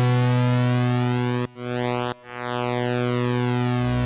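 Roland Juno-60 analog synthesizer holding low notes, its oscillator set to a pulse-width-modulated square wave mixed with sawtooth, which gives a slowly shifting, swirling tone. The sound cuts out briefly twice, about a second and a half and two seconds in, as the notes are played again.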